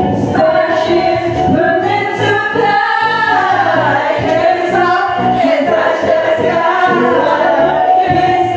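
Karaoke singing: a man singing into a microphone over a loud karaoke backing track, with other voices singing along.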